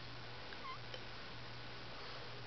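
Pug groggy from anesthesia giving one brief, faint whimper about two-thirds of a second in, over low room noise with a steady hum.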